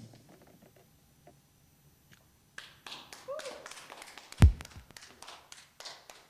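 A couple of seconds of near silence, then a small audience begins clapping, with one loud deep thump in the middle of the applause.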